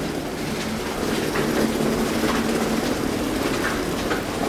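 Steady rushing background noise with a low hum underneath, with no clear single event standing out.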